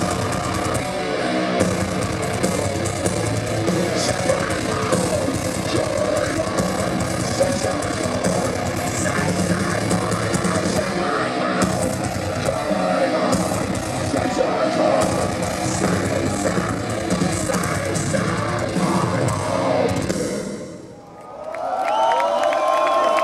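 A metal band playing live at full volume: distorted electric guitars and drums in a dense, heavy wall of sound. The music fades down sharply near the end.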